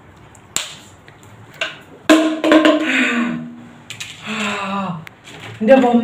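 Two sharp clicks about half a second and a second apart, then a voice speaking in short, loud phrases.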